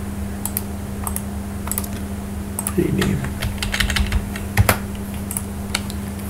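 Computer keyboard and mouse clicking: irregular, scattered key and button clicks over a steady low hum.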